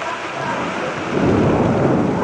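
Steady rain during a thunderstorm, with a low rumble of thunder rising about a second in and running on louder to the end.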